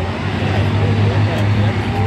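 Several race car engines running together in a steady low drone as the cars circle the track.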